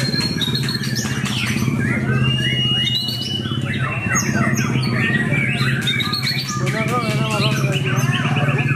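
White-rumped shama (murai batu) singing a long, varied song of clear whistles, pitch glides and rapid trills, with no break, over a steady low hum.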